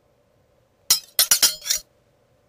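A quick run of five sharp, bright clinking impacts, one alone followed by four close together, over less than a second, starting about a second in.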